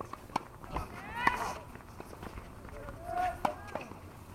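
Outdoor tennis court sounds: scattered sharp knocks of tennis balls off rackets and the hard court, with players' voices calling out about a second in and again near the end.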